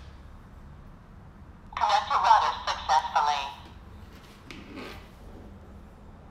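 A short recorded voice prompt, about two seconds long, from the bulb camera's small speaker, the kind these cameras play as they join the Wi-Fi network. A faint brief handling sound follows about a second later.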